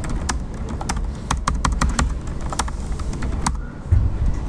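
Computer keyboard being typed on: a quick, uneven run of about a dozen keystrokes over a steady low hum.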